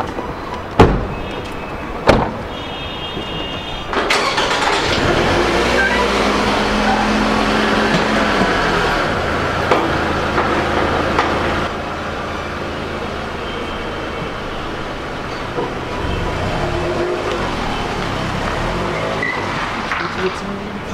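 Two car doors shutting, about a second apart, then a Toyota Camry's engine running steadily from about four seconds in.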